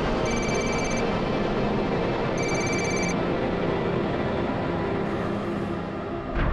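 Mobile phone ringtone ringing: two short high electronic rings about two seconds apart, over a steady low background.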